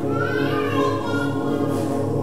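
Mixed choir holding a sustained chord, with a higher voice gliding up over it at the start and the upper parts swelling and then fading away near the end.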